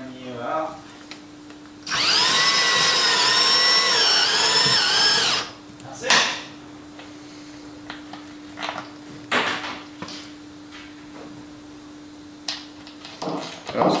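Cordless drill driving a screw through a wooden rubbing strake: one run of high motor whine lasting about three seconds, its pitch dipping slightly under load near the end. A sharp knock follows, then a few lighter clicks.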